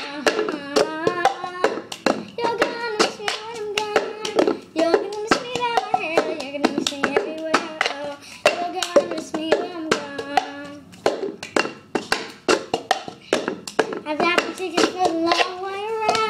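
A girl singing a melody over the cup-song rhythm. Hand claps and a plastic cup tapped and knocked on a tabletop make a steady run of sharp strikes under her voice.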